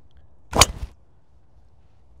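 Driver striking a golf ball off a tee: one sharp crack of impact about half a second in, trailing off briefly.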